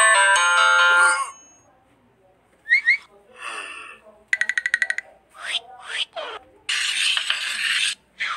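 Cartoon soundtrack: a tune of short struck notes stops about a second in, followed after a pause by short comic effects — quick chirps, a rapid rattling buzz, several downward swoops — and, near the end, about a second of dense scratchy noise as of marker scribbling on a whiteboard.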